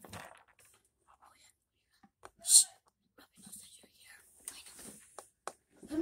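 A child whispering softly, with small taps and rustles of plastic toy figures being handled and one short, loud hiss about two and a half seconds in.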